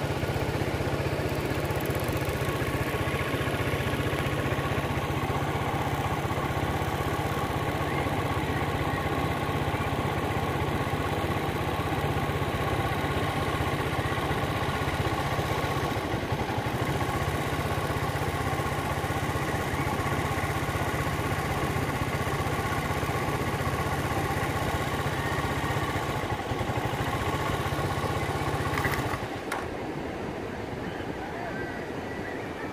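An engine running steadily at idle, with a constant low hum and an even pitch, stopping about a second before the end.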